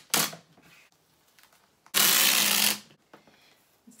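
Packing tape pulled off a handheld tape dispenser: a short rip at the start, then a longer, loud rip of almost a second about two seconds in.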